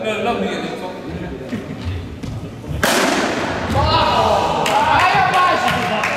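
A single sharp crack of a hard cricket ball being hit, echoing around the sports hall, about three seconds in. A second later players shout.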